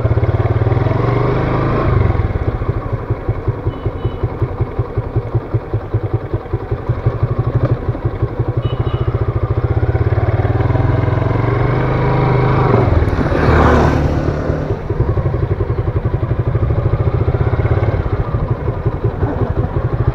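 Motorcycle engine running at low revs on a rough dirt trail, its separate firing pulses clearly heard, with a brief rise in revs about two-thirds of the way through.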